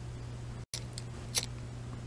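Pocket lighter being struck to light a candle: one short, sharp click about a second and a half in, over a steady low hum.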